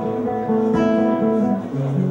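A classical-style acoustic guitar played fingerstyle, its plucked notes ringing together in chords. One chord is brushed about a third of the way in, and the chord changes to lower bass notes near the end.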